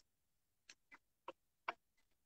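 Near silence broken by four short, irregular clicks in the second half, the last the loudest.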